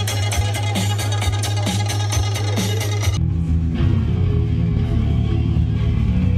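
Loud live heavy metal: a fast, steady beat with dense high ticks stops abruptly about three seconds in, and low, heavy distorted guitar and bass take over.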